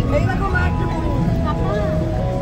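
Safari bus engine running steadily, with people's voices over it.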